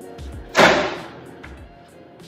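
A marble-and-wood cutting board tipping over and striking the granite countertop: one loud, sharp knock about half a second in that dies away quickly.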